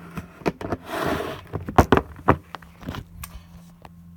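Handling noise on a tabletop: a short rustle about a second in and several sharp clicks and taps as small objects are moved about, over a faint steady low hum.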